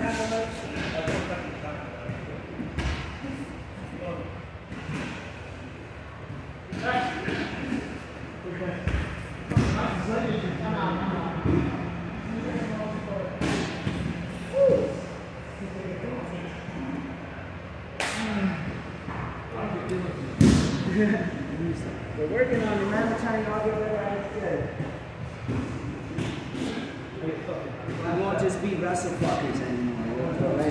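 Grappling on gym mats: a few sharp thuds of bodies hitting the mat, the loudest about two-thirds of the way in, among indistinct voices echoing in a large hall.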